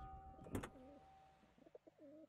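Faint, low, wavering bird calls, heard twice, over a quiet background in which a held tone fades away.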